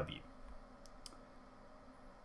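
Quiet room tone with two faint, short clicks about a second in, a fifth of a second apart.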